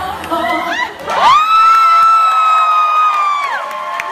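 Wedding guests cheering and clapping as the dance music cuts off; about a second in, one shrill, steady high note rings out over the crowd for about two seconds and then drops away.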